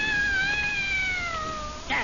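A domestic cat's long, drawn-out meow, sliding slowly downward in pitch for nearly two seconds, used as a sound effect in a radio drama.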